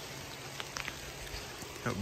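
Rain falling steadily: an even hiss with a few faint drip ticks.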